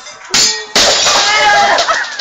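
A sudden bang, then a loud crash with ringing clangs that lasts about a second before fading: something being smashed.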